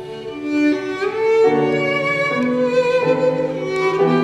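Violin playing a sustained bowed melody over Bösendorfer grand piano accompaniment, its notes changing about every half second to a second.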